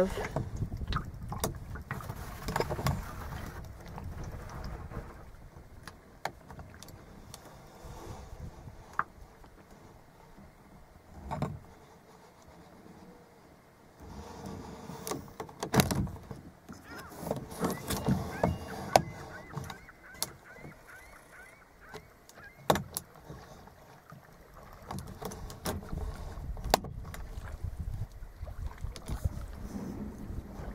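Mourning dove cooing over the lapping of water against a kayak, with a few sharp knocks of paddle or hands against the boat.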